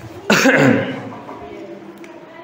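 A single loud cough about a quarter second in, lasting about half a second.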